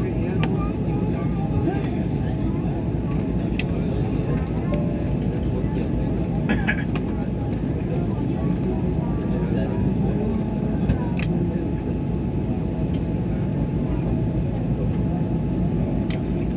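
Steady cabin noise inside a taxiing airliner: a constant rumble of the idling engines and the rolling aircraft, with passengers' voices in the background and a few brief clicks.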